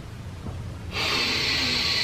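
A man taking one long, deep breath in: after a quiet first second the inhale starts and goes on as a steady hiss of air.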